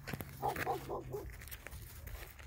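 Great Pyrenees dog vocalizing: a quick run of four or five short, high-pitched sounds starting about half a second in and lasting under a second.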